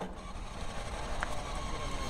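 Steady outdoor background noise with a low rumble, picked up by a clip-on mic, growing slightly louder, with one brief faint higher chirp about a second in.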